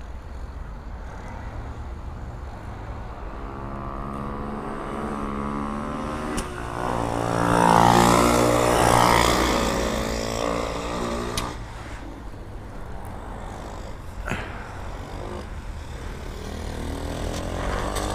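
A small motorcycle engine passing by, growing louder to a peak about eight seconds in and then fading as it moves away, with other engines running faintly in the background.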